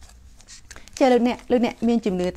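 Faint rustling of paper packaging, then a woman speaking from about a second in.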